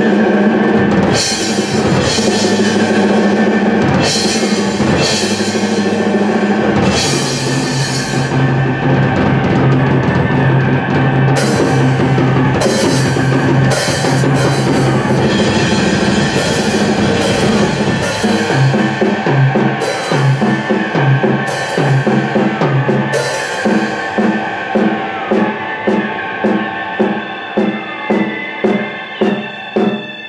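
Drum kit played hard and freely: dense rolls and cymbal crashes over a steady low tone. In the last third it settles into a regular pulse of about two beats a second.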